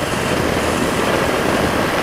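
Motorcycle cruising at a steady speed on an open road: the engine running evenly under a steady rush of wind and road noise.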